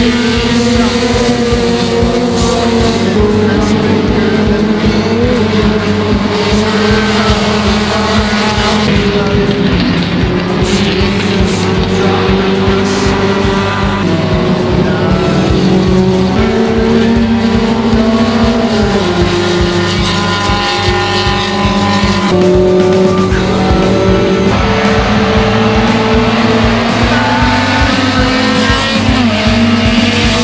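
Small hatchback touring race cars' engines running at high revs on the circuit, mixed with background music that has a steady beat. Near the end there is a rising note as an engine revs up.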